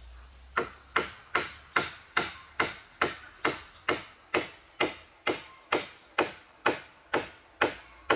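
Hammer striking wooden boards in steady, evenly spaced blows, about two a second, starting about half a second in.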